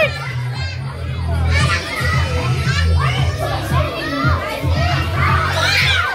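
A group of children shouting and squealing excitedly as they strain at a tug-of-war rope, many high voices overlapping throughout. A steady music bass line runs underneath.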